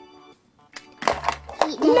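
Soft background music, with light clatter from a plastic toy bed being handled on a plastic playset about a second in; a woman's voice says "no" near the end.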